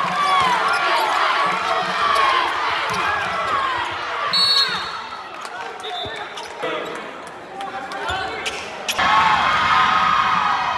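Sounds of a basketball game in a gym: a basketball bouncing on the hardwood court amid many shouting voices. The voices are loud at first, drop off in the middle, and rise again near the end.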